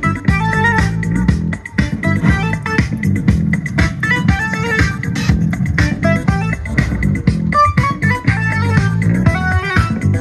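Music with guitar and bass played loudly through a Novox OneVox portable speaker at full volume, with quick plucked notes over a busy bass line.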